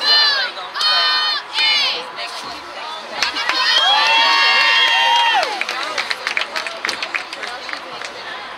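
Cheerleaders' young high voices chanting a cheer in short rhythmic phrases, then one long held shout about three seconds in, followed by a run of claps.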